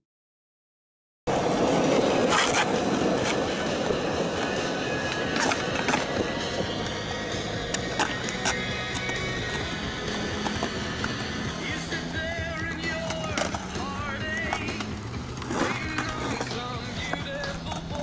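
Skateboard wheels rolling on rough concrete, broken by several sharp clacks of the board against the ground, starting suddenly after about a second of silence.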